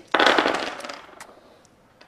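Four plastic six-sided dice thrown onto a tabletop, clattering in a quick burst of clicks that dies away over about a second, with one last click as a die settles.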